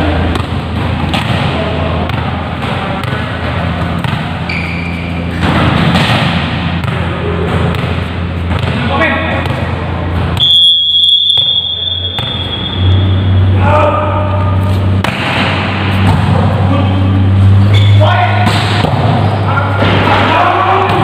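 Volleyballs being hit and bouncing on an indoor court, with players' shouts between the hits. About halfway through, a whistle is blown once in a steady tone for about a second and a half.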